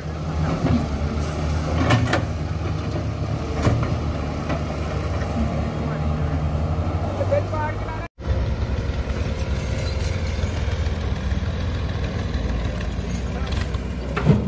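Diesel engine of a Doosan wheeled excavator running steadily under working load while it digs and loads soil, with occasional short knocks. The sound breaks off for a moment about eight seconds in, then the engine carries on.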